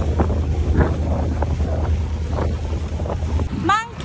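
Wind buffeting the microphone over the steady low drone of a motorboat underway, with rushing water. About three and a half seconds in it cuts off abruptly and a woman's high voice calls out.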